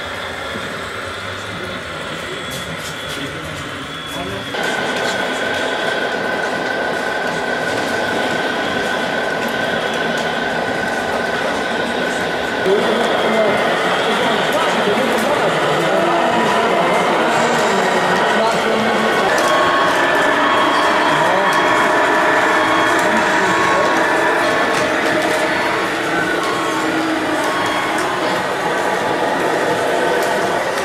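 Scale RC trucks running on a dirt construction layout, a steady mechanical drive noise with some whine, over a background of people's voices. The sound steps up suddenly about four seconds in and again near the middle, where the shot changes.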